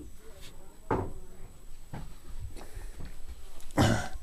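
A few light knocks and bumps with rustling handling noise, as of equipment and cables being moved around, the loudest knock near the end.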